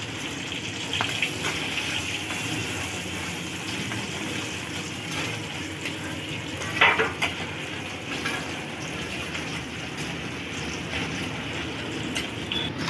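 Onions and green chillies sizzling in hot oil in an iron frying pan, the second tempering of a curry, while a metal spatula stirs and scrapes against the pan with scattered clicks, loudest about seven seconds in.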